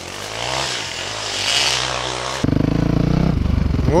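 A rushing noise, then from about two and a half seconds in a 450 cc single-cylinder enduro motorcycle engine running close, a rapid, even pulse.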